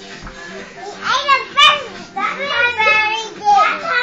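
A toddler's high-pitched voice calling out in several loud bursts from about a second in, over pop music playing in the background.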